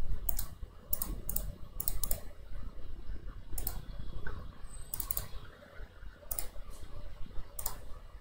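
Sharp, separate clicks from a computer mouse and keyboard at uneven spacing, some in quick pairs, as lines are picked one by one with the trim command.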